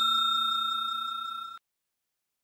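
The fading ring of a bell 'ding' sound effect, pulsing quickly as it dies away, then cutting off abruptly about one and a half seconds in. It is the notification-bell sound of a subscribe-button animation.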